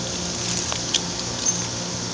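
Steady machine hum and hiss, with two sharp clicks about a second apart and a brief high squeak near the second one.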